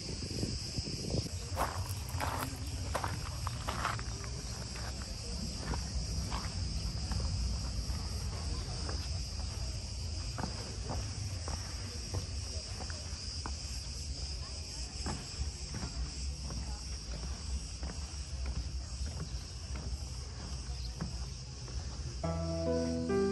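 Cicadas buzzing steadily in the trees, with wind rumbling on the microphone and scattered footsteps.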